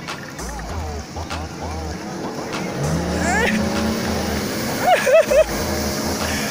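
Jet ski engine running, rising in pitch about three seconds in and then holding a steady note as the craft comes close across the water.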